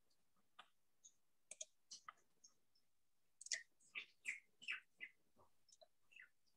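Near silence, broken by faint, scattered short chirps and clicks that come closer together from about three and a half seconds in.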